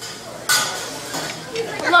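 Dishes and cutlery clattering in a busy restaurant: a sudden loud clatter about half a second in, its high ringing fading away.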